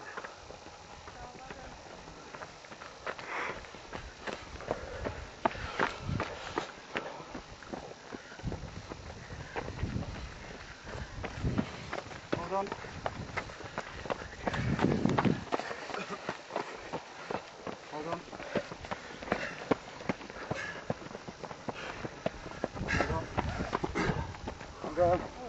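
Several fell runners' footsteps on a dry dirt-and-stone track, an irregular stream of short strikes as runners come up close one after another.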